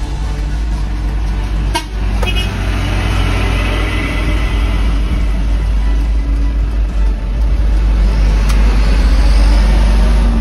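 Heavy trucks driving past on a dirt road, their engines and tyres running loud and growing louder toward the end. There is a short horn toot about two seconds in.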